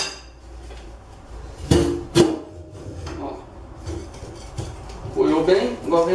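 Two sharp metallic clanks about half a second apart, each ringing briefly: band-clamp hardware knocking against a stainless steel sink bowl as it is fitted inside.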